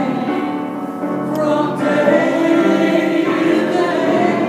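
A man singing a slow worship song while accompanying himself on a grand piano, the voice holding long notes over the piano.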